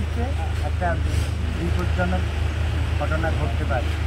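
A man talking in Bengali over a steady low hum.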